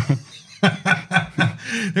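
Men chuckling: a run of short, rhythmic laughs starting about half a second in.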